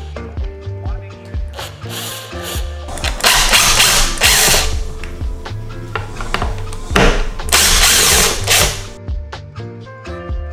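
Cordless impact driver running in two loud bursts, about three seconds in and again about seven and a half seconds in, working the screws of a Onewheel GT's frame. Background music with a steady beat plays throughout.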